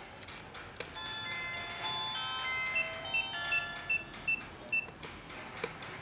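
Wireless alarm control panel sounding electronically: a short melody of steady chord-like tones, then about six short high beeps about two and a half a second, as the water-leak detector dipped in water trips the armed system.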